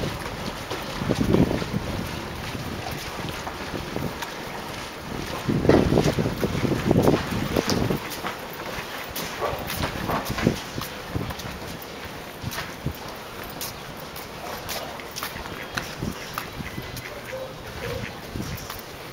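Wind buffeting an outdoor microphone in gusts, strongest about a second in and again around six to seven seconds in, over a steady noisy background with scattered small clicks.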